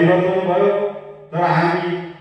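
A man speaking Nepali into a microphone in long, even-pitched phrases, with a short break about a second in.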